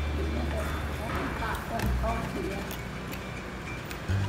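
Indistinct background voices over a low steady hum that shifts pitch about two seconds in, with a few faint clicks from a small cardboard perfume box being opened by hand.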